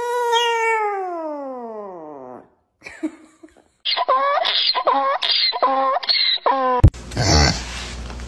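A chihuahua gives one long howl that slides steadily down in pitch and dies away after about two and a half seconds. After a short pause a donkey brays, about five calls in a row, each rising and falling, cut off sharply near the end.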